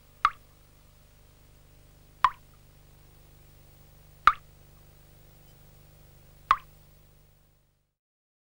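Drops plopping into water, four single drops about two seconds apart, over a faint low hum that fades out near the end.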